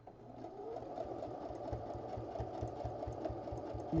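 Electric sewing machine running a straight-stitch seam through two layers of quilt fabric: the motor speeds up with a short rising whine at the start, then runs steadily with a fast, even beat of the needle.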